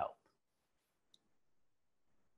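Near silence after the last word, broken by one faint, short click about a second in.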